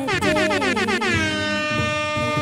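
A loud horn-like sound effect: a single tone that wavers quickly up and down for about a second, then holds one steady pitch.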